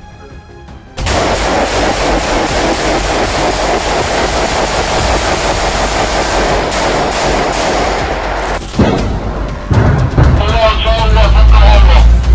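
Sustained automatic gunfire: rapid, unbroken shots begin about a second in and run for roughly eight seconds. After a brief gap, more shots follow near the end, with deep booming underneath.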